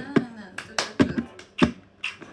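A series of sharp taps or clicks, about six in two seconds in an uneven rhythm, in a small room.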